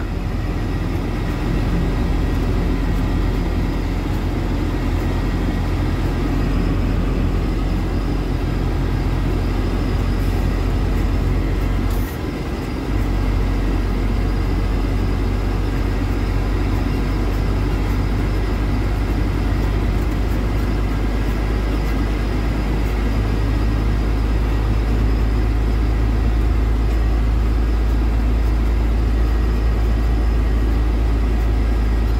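Steady engine and road noise inside a truck cab cruising on the highway, a low drone with a brief dip about twelve seconds in.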